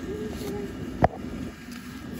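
A single sharp plastic click about a second in, as a black plastic clip is snapped onto a fabric loop of an inflatable Santa Claus, over a steady low hum.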